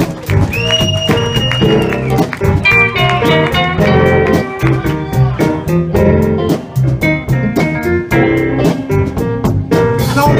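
Electric blues band vamping: a lead electric guitar plays phrases over bass and a steady drum beat, starting with one long held high note bent up about half a second in.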